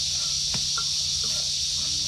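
Steady high-pitched drone of insects, with a few faint clicks of a metal ladle stirring in a steel cooking pot.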